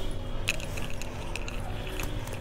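Net (tulle) frock fabric rustling as it is lifted and spread out by hand, with a few light jingling clinks, the sharpest about half a second in.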